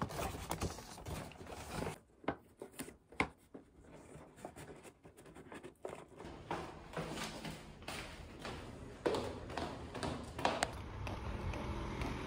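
Paper and cardboard rustling, scraping and knocking as a box is slid into a kraft paper shopping bag and the bag is handled by its handles. Near the end this gives way to a steady low outdoor noise.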